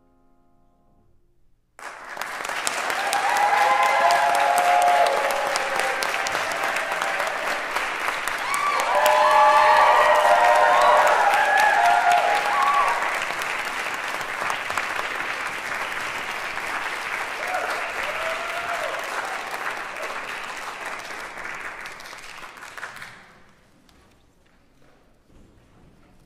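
Concert audience applauding in a hall, starting suddenly after the last piano chord has died away, with voices cheering over the clapping twice. The applause tapers off near the end.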